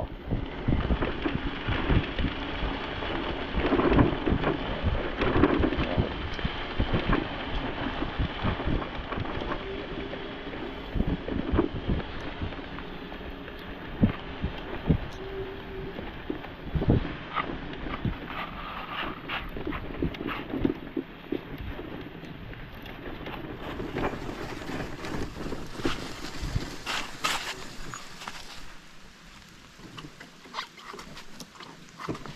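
Wind buffeting the microphone, with a constant clatter of knocks and rattles from a DYU A1F folding electric bike ridden over a bumpy gravel road. It gets quieter near the end as the bike slows.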